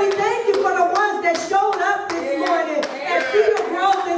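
Steady hand clapping, roughly two to three claps a second, over a voice that keeps going underneath.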